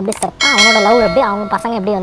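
Notification-bell ding sound effect from a YouTube subscribe-button animation: quick clicks, then a bright bell chime that rings for about a second and fades, over continuing talk.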